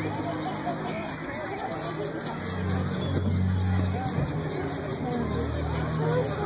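Crowd chatter, many voices talking at once, over music with deep held bass notes that change pitch a few times. No firework bangs stand out.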